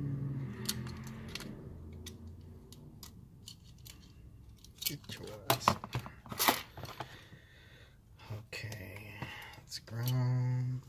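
Small plastic electrical box and its wires being handled and pushed into place: scattered clicks and rustles, with a cluster of sharper clicks about midway.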